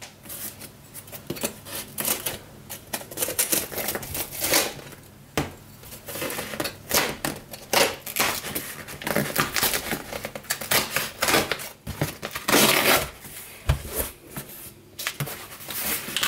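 A blade slitting packing tape on a cardboard shipping box, with irregular scraping, clicking and tearing of tape and cardboard as the flaps are worked open. There is a longer, louder rasp about twelve seconds in.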